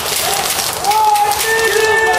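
Airsoft guns firing, a dense irregular crackle of shots, with players shouting over it from about a second in.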